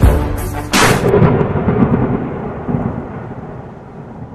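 The last two heavy beats of a hip hop track in the first second, then a long thunder rumble sound effect that slowly fades away.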